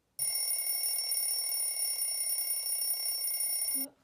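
An alarm clock ringing steadily for nearly four seconds, then cutting off suddenly near the end.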